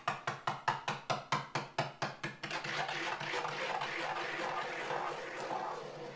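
A homemade spinning top, eight small flashlights on a wooden hub with a screw tip for an axis, spinning on a metal tabletop. For the first couple of seconds it knocks about four times a second as it wobbles. Then it turns into a steady scraping whirr that fades out as the top slows to a stop.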